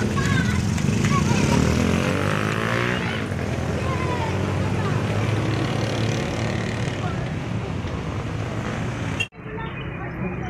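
Busy market ambience: people talking in the background over the steady running of a motor vehicle engine, whose pitch sweeps up and down about two to three seconds in. The sound drops out abruptly for an instant about nine seconds in.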